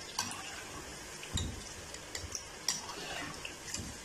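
Batter-coated cauliflower florets deep-frying in hot oil in a metal kadai: a steady sizzle, with a few light clicks of a metal slotted spoon against the pan as the pieces are stirred.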